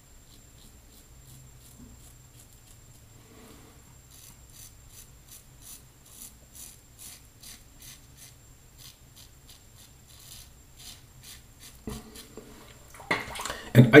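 Fatip Testina Gentile open-comb safety razor scraping through stubble under lather on the across-the-grain pass: a faint run of short rasping strokes, roughly two a second.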